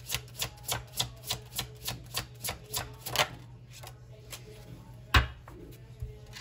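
A deck of oracle cards being shuffled by hand: quick, even card slaps about four a second for the first three seconds, then fainter handling and one sharp tap near the end.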